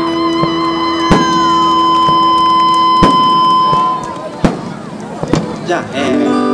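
Fireworks going off: several sharp bangs a second or two apart. Under them a band's long held closing chord stops about four seconds in.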